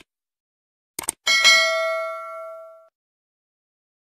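Subscribe-button animation sound effect: two quick clicks about a second in, followed at once by a bright notification-bell ding that rings out and fades over about a second and a half.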